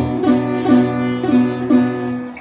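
Nylon-string classical guitar picked on a B minor chord, with a steady low bass note and a fresh pluck about every half second.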